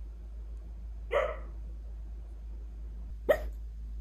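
A dog making two short barks in its sleep, about two seconds apart, the second the louder, over a steady low hum.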